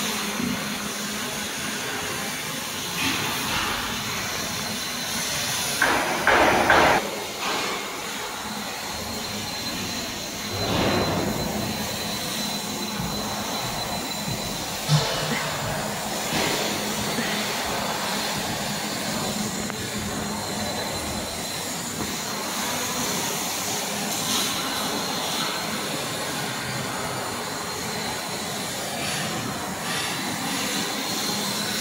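Steady hissing background noise of a factory workshop, with a louder burst of noise about six seconds in, another swell about eleven seconds in and a sharp click about fifteen seconds in.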